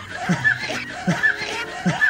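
A person laughing in a steady run of short "ha"s, each falling in pitch, about two or three a second.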